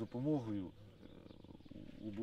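A man's voice speaking briefly, then a low, rattly sound lasting about a second.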